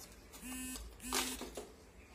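Two short, steady buzzes, each about a third of a second long and at one flat pitch. The second is overlapped by a brief burst of hiss, the loudest moment.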